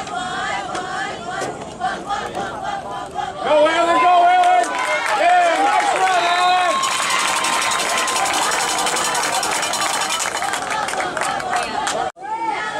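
Crowd of spectators shouting and cheering. Loud yelling starts about three and a half seconds in and gives way to a steady wash of cheering from about seven seconds.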